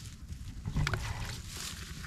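Hands rustling through tall grass and stirring shallow water, with a burst of rustling, splashing and small knocks starting a little under a second in, over a steady low rumble.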